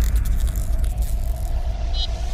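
Cinematic logo sting sound effect: a heavy, deep rumble under a faint, slightly rising hum, with a brief high chime at the end.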